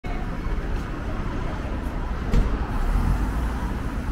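Street ambience dominated by a steady low rumble of road traffic, with a single short thump about two and a half seconds in.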